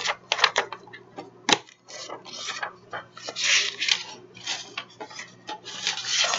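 Paper handling on a desk: the pages of a ring-bound journal being rubbed, shuffled and turned, with a longer rustle about three and a half seconds in and one sharp click about a second and a half in.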